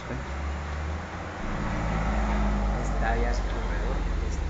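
A low, steady rumble that grows a little louder partway through, with faint voices near the end.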